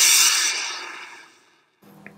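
An editing sound effect: a loud rush of hissing noise that is loudest at first and fades away over about a second and a half.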